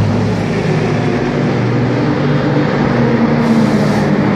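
Aston Martin Vantage GT3 race car engine running at a steady, even pitch as the car drives away down the pit lane.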